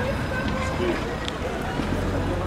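Street ambience: passers-by talking at some distance, with the low rumble of a car driving past close by.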